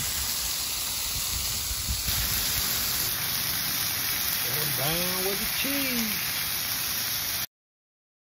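Beef smash burger patties and buns sizzling on a Blackstone flat-top griddle, a steady frying hiss that stops abruptly near the end.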